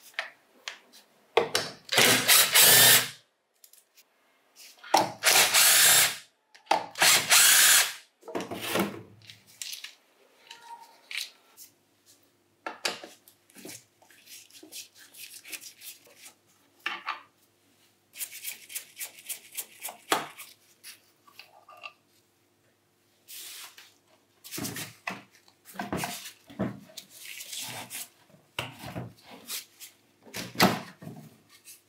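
Hands-on disassembly of a portable band saw's metal housing and handle: a few loud scraping, rubbing bursts of about a second each, then quieter clicks and rattles of a screwdriver, screws and parts being handled, and another run of scrapes and knocks near the end.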